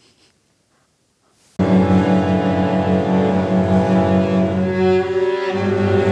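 After a near-silent first second and a half, orchestral string music starts abruptly and loud: cellos and double basses play a figure of quick repeated low notes under held higher strings. Near the end the bass line drops lower.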